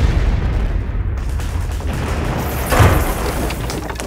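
Bomb explosion sound effect: a deep, booming rumble that carries on through the blast, with a second sharp crash nearly three seconds in before it dies away.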